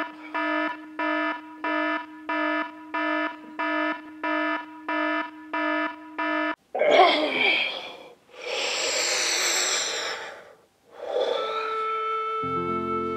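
Alarm clock beeping in a steady repeating pattern about twice a second, cut off suddenly about six and a half seconds in. A man's groan and long, heavy breaths follow.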